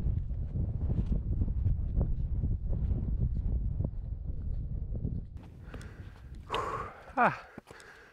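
Wind buffeting the microphone in a low, gusty rumble, with faint footsteps and walking-pole taps on the ground; the wind dies down after about five seconds. Near the end a man's voice gives a brief call that falls in pitch.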